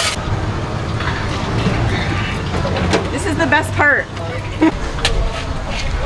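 Steady low rumble of a motor vehicle running nearby, with a brief voice about three and a half seconds in and a few sharp clicks.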